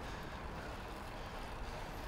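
Steady rush of wind on a moving camera's microphone mixed with the noise of street traffic and tyres on the road.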